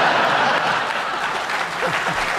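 Studio audience laughing and applauding, a dense, steady wash of clapping and laughter.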